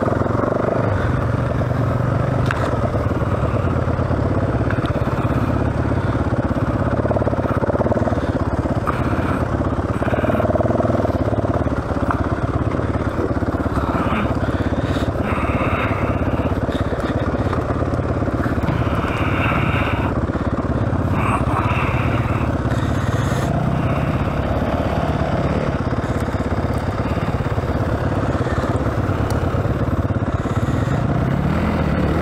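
Yamaha WR450F's single-cylinder four-stroke engine running under load as the bike is ridden over rough woodland trail, its revs rising and falling with throttle and gear changes. Occasional knocks and clatter from the bike bouncing over ruts and roots.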